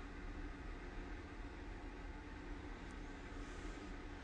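Quiet, steady low hum of room tone, with no distinct events.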